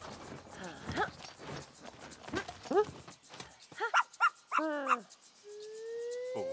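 A cartoon puppy yipping and barking, a quick series of short, high yaps in the second half.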